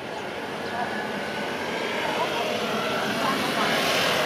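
A motor vehicle's engine and road noise growing steadily louder as it approaches, with people talking faintly in the background.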